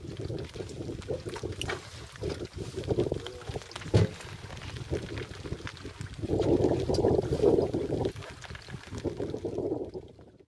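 Irregular handling noise from a gloved hand working bigfin reef squid in a metal-framed landing net on a boat deck. There is a sharp knock about four seconds in and a louder stretch of rustling between about six and eight seconds.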